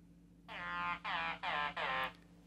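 Korg Volca Keys analog synthesizer playing a freshly loaded patch: four short notes in quick succession starting about half a second in, each falling in pitch.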